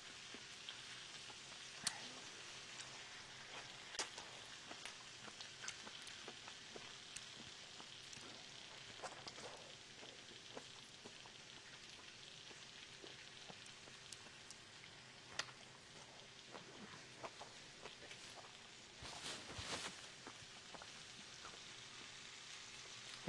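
Faint, wet mouth sounds of a person biting and chewing a juicy peach close to a clip-on lav mic. Scattered sharp clicks over a low steady hiss, with a denser cluster of sounds near the end.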